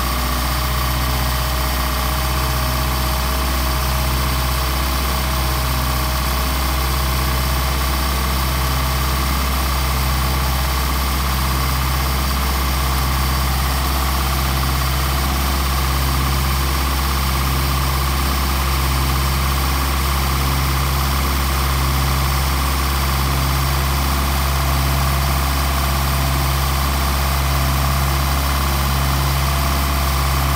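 Mercedes 190SL inline four-cylinder engine on twin Solex carburetors, idling steadily with a slow, even pulsing while it warms up from a cold start.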